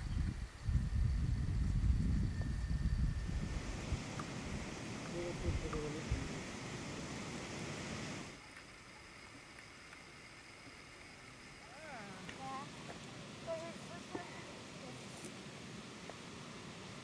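Wind buffeting the microphone outdoors, loud at first and then easing into a steady rushing noise. It cuts off suddenly about eight seconds in, giving way to quieter open-air ambience with a few faint, short pitched sounds.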